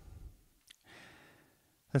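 A person's breathing in a pause between sentences: a soft out-breath, a small click, then a faint in-breath before speech resumes near the end.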